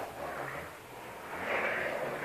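Toy pushchair rolling across a wooden floor: a soft, steady rolling noise that grows louder in the second second.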